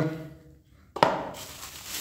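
A sharp knock about a second in, then the crinkling rustle of plastic bubble wrap as the wrapped flashlight is handled and lifted off the table.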